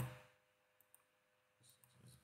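Near silence after a man's voice trails off, with two faint, short clicks a little under a second in, typical of a computer mouse button.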